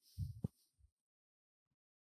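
A brief low thump with a sharp click inside it, then a fainter low thump; the rest is near silence.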